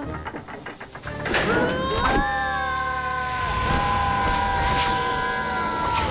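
Cartoon boys letting out one long, drawn-out scream as they fall and slide down a sand slope, with a low rumble under it. The scream rises at first and is then held.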